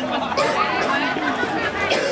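Spectators' chatter: several voices talking at once, none standing out clearly.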